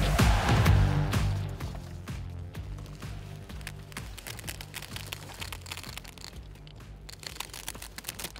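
Background music fading out over the first two seconds, then faint crinkling and clicking of a rooftop tent's fabric and frame as it is unfolded.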